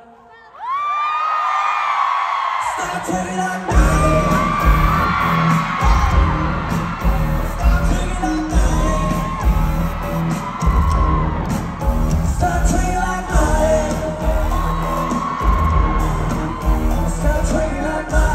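Live pop concert music played loud through a PA. After a brief break, voices and crowd whoops build over the track. About four seconds in, a heavy pulsing bass beat drops in and the instrumental dance section plays.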